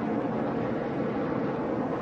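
NASCAR Cup Series stock cars' V8 engines running at racing speed, a steady multi-tone drone from the pack as carried on the TV broadcast.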